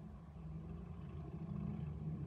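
A car approaching along the street, its engine and tyre noise growing louder.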